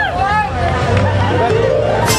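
A boy singing into a microphone over a live mariachi band, with crowd chatter. The band's rhythmic strumming drops out and comes back in at the end.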